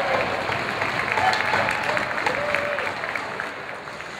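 Ice hockey arena crowd noise: a loud, steady din of spectators with scattered shouts, cut through by short sharp clicks from play on the ice, easing off slightly near the end.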